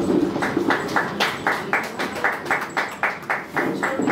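Hands clapping in a steady, even rhythm, about four claps a second, starting about half a second in.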